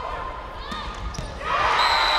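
Sneakers squeaking on a hardwood court during a volleyball rally. About one and a half seconds in, loud shouting and cheering break out as the point is won, with a steady high whistle tone starting just after.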